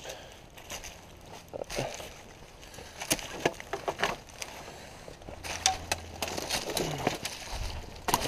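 Irregular footsteps crunching through dry fallen leaves and twigs, with scattered sharp cracks and rustles.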